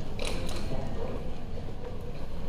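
Steady low hum of a busy airport terminal, with a short high creak or squeak about a quarter of a second in.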